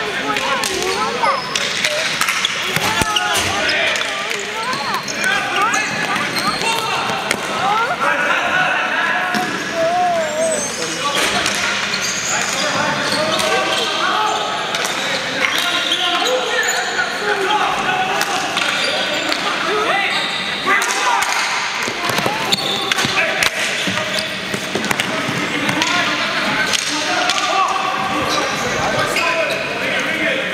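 Ball hockey play on a concrete floor: sticks clacking and the ball striking the floor and boards at irregular moments, with players and spectators shouting throughout.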